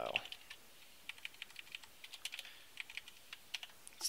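Typing on a computer keyboard: a run of quiet, irregular keystrokes.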